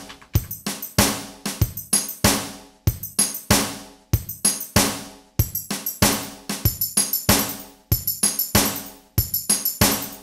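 Zoom MRT-3 drum machine playing a looping drum pattern sequenced over MIDI, with kick, snare and hi-hat hits and some long ringing hits. Flams are being added to the tambourine steps, so those hits are quickly repeated.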